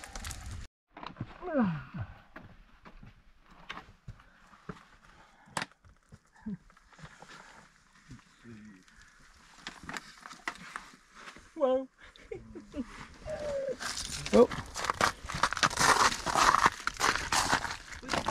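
Hikers scrambling up a steep, wet, icy rock slab: grunts and wordless exclamations, with scuffing and crunching steps on the rock and ice that grow busy and loud in the last few seconds.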